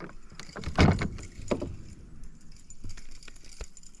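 Handling sounds of a wire umbrella rig with a bass on it: light metallic clinking and rattling of the rig's arms and lures, with a louder knock about a second in and a smaller one soon after.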